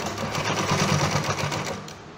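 Industrial sewing machine stitching through fabric in one short run, a fast even run of needle strokes that stops just before the end.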